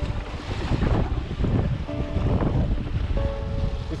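Wind buffeting the microphone of a camera mounted on a windsurf rig under sail, a gusting low rumble, over the rush of water beneath the board.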